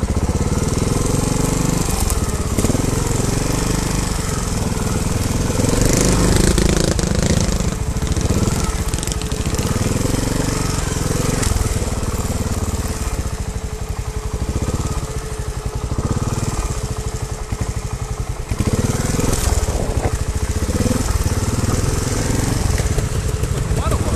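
Trials motorcycle engine running as the bike is ridden down a rough trail, the throttle opening and closing so the engine note rises and falls every second or two.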